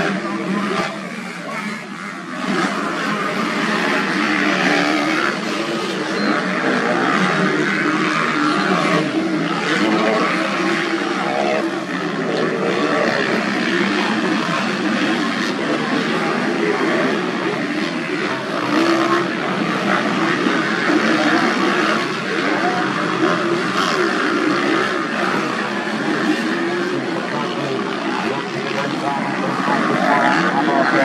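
Several motocross dirt bikes racing on a dirt track, their engines revving up and down continuously as they ride.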